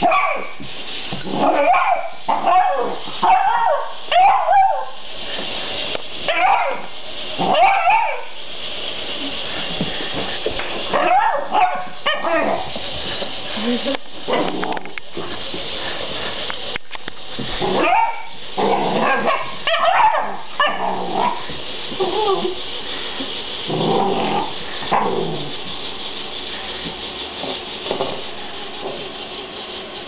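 A beagle barking in repeated bouts of short calls, with pauses between them.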